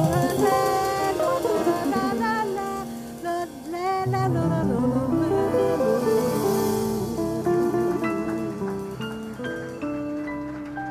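Live small-group jazz: a woman singing with vibrato over hollow-body jazz guitar, piano, upright bass and drums, the sound gradually getting quieter.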